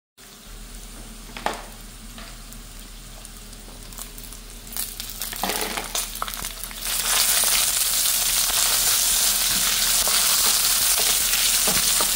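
Tortilla pieces frying in oil in a nonstick pan: a faint sizzle with a few clicks, which turns loud and steady about seven seconds in, once chopped green pepper, tomato and onion are in the hot pan.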